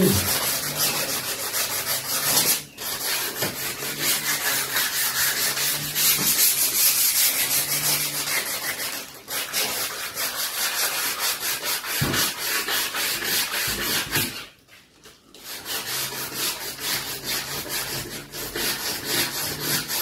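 Hand-sanding a wooden door frame with sandpaper in rapid back-and-forth strokes, with short pauses and a longer one about fifteen seconds in. This is surface preparation of the wood before painting.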